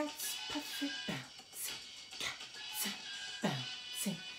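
Beatboxed vocal percussion of the phrase "bouncing cats, puffy": consonants are stressed and vowels hidden, turning it into a steady beat with a low kick and a sharp hissing "ts" roughly every half second.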